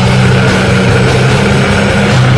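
Black metal music: heavily distorted guitars and bass holding a steady low chord under a dense wall of sound, with drums.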